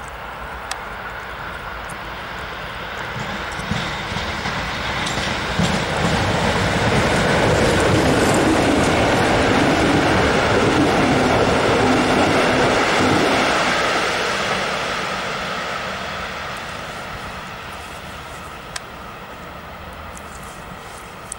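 Electric train passing along the track, its rumble and wheel noise swelling to a peak about halfway through and fading away toward the end, with a few sharp clicks along the way.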